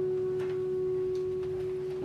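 The closing note of a piece of music, held as one steady, pure-sounding tone, with a couple of faint ticks.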